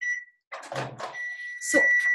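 Microwave oven beeping at the end of its 30-second heating cycle: a short high beep at the start, then a longer beep of the same pitch from about a second in.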